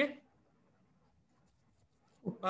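A man's spoken word ending at the start, then near silence: faint room tone.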